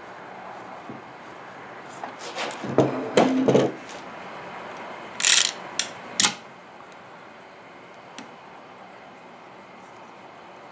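Workbench handling noises of tools and wood: a flurry of knocks and scrapes about two to four seconds in, then a short hissing scrape and two sharp clicks a little past the middle, and one faint click near the end.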